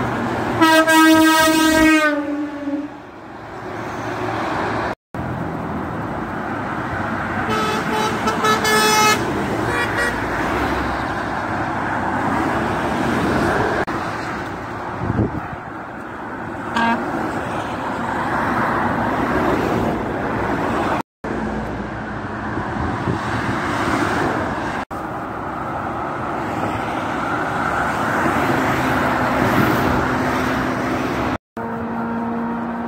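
Lorry air horns blowing over steady motorway traffic: a long blast in the first two seconds whose pitch drops at its end, a second, higher blast about eight seconds in, and a short toot about seventeen seconds in. Between them, the steady rush of tyres and engines from passing traffic.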